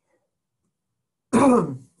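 A man clearing his throat once, loudly, about a second and a half in, after near silence.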